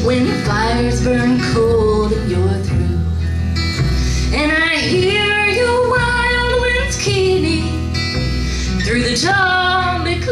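A woman singing a slow folk ballad, holding long notes, accompanied by a strummed acoustic guitar and a plucked upright bass.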